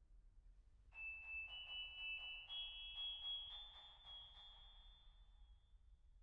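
Steinway grand piano played softly in its top register. About a second in, high notes are struck in quick repetition, about four a second, with the pitch stepping up a few times, then they ring away and fade before the end.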